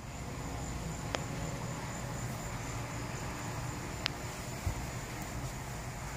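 Steady low rumble inside a parked car, with a thin, steady high-pitched drone over it and a couple of faint clicks.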